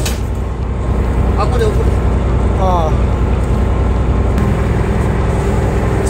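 A fishing boat's engine running steadily, a constant low hum under a few short bursts of voices.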